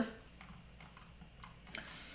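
A few faint, scattered clicks from a computer keyboard over quiet room tone, about four in two seconds.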